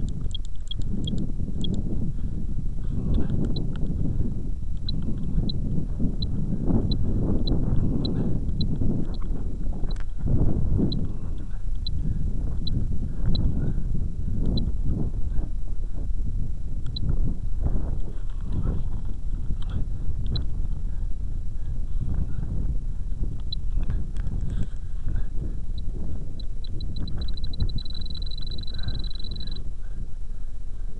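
Spektrum RC transmitter beeping with short high pips, about two a second, as its trim switch is stepped to add up trim. Near the end the pips speed up and run into a steady tone for about two seconds. Wind and handling noise on the microphone rumble and knock throughout.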